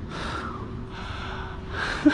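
A man breathing hard while climbing a steel ladder: one heavy breath at the start and another near the end, over a steady low hiss.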